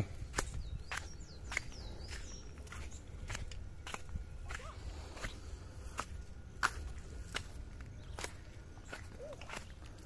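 A person walking on dry dirt and stones, footsteps at an unhurried pace of about one step a second.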